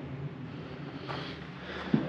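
Low, steady outdoor background noise with a light rush of wind on the microphone; no distinct event.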